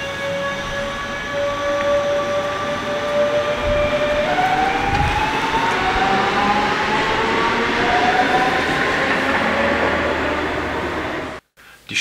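A passenger train at a station two tracks away: a steady rumble with a held whining tone that, from about four seconds in, gives way to several whines slowly rising in pitch. The sound cuts off suddenly near the end.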